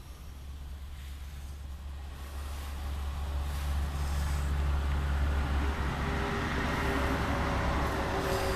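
A motor vehicle's engine and road noise: a low hum with a broad rushing sound that grows steadily louder over several seconds.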